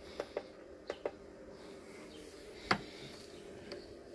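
Faint steady hum from an EPEVER solar charge controller pulsing as it holds off the 35-volt panel input, because the battery bank is essentially full. A few soft clicks from its buttons come over it, the loudest a little before the end.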